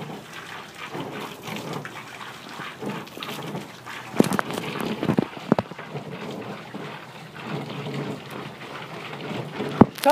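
Water from a garden hose running and splashing as it pours onto clothing and down onto the ground and a plastic kiddie pool, with a few sharper splashes or knocks about four to five and a half seconds in.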